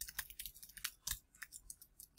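Typing on a computer keyboard: a quick, uneven run of quiet key clicks.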